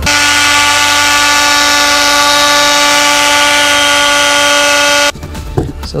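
Loud, steady droning tone with a hiss over it. It starts at once, holds one pitch, and cuts off suddenly about five seconds in.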